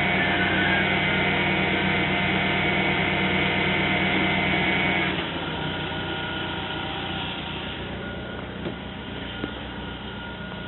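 BMW E36's M43 four-cylinder engine idling with its A/C system running for a test. About halfway through, a steady whine cuts out and the sound drops to a quieter, steady idle.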